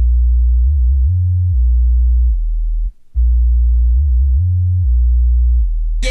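Solo sub-bass line from a breakbeat hardcore track: deep, pure bass notes stepping between a few pitches, with no drums or other parts over them. The phrase cuts out briefly about three seconds in, then plays again.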